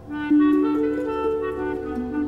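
Symphony orchestra playing slow, sustained music. A louder melodic line of held notes enters about a quarter second in, moving in small steps over soft sustained chords.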